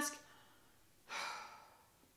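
A woman's short, soft audible breath, about a second in, in a pause between sentences; otherwise quiet room tone.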